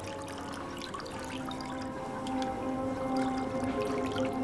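Liquor being poured from a bottle into a row of glass tumblers, over background music.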